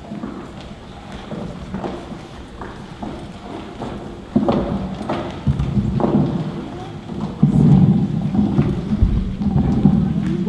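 Footsteps knocking on a wooden stage and stairs over the noise of a seated audience in a large echoing gym. The crowd noise grows louder about four seconds in and again about halfway through.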